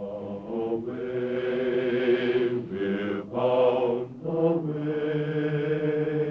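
Voices singing slow, long held notes in harmony, with short breaks between the phrases.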